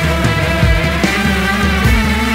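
Instrumental rock music: sustained guitar chords over a moving bass line, with drums keeping a steady beat.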